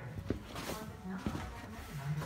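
Faint rustling and a few light knocks from a handheld camera being swung around, with a short low murmured hum from a man's voice.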